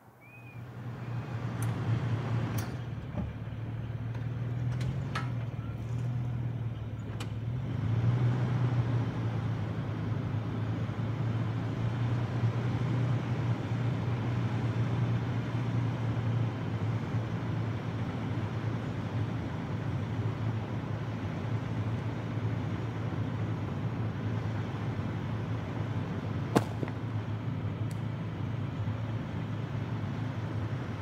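A vehicle engine running steadily at idle, a constant low hum. A few sharp clicks and knocks come through it, the loudest about twenty-six seconds in.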